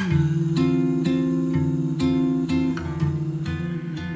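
Acoustic guitar music, with chords plucked about twice a second in an instrumental passage of a song.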